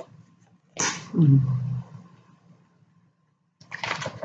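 A short non-speech vocal sound about a second in: a sharp noisy onset, then a low voiced tone that falls in pitch and lasts under a second.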